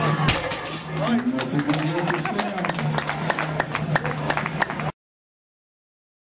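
A loaded deadlift barbell comes down onto the platform with a heavy thud just after the start. Scattered clapping and shouting voices follow, then the sound cuts off suddenly near the end.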